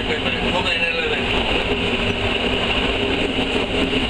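An ALn 663 diesel railcar runs steadily, heard from inside its cab as a loud, even mechanical drone that does not let up.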